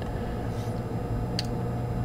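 Steady low hum with a faint background hiss, and one short click a little past halfway.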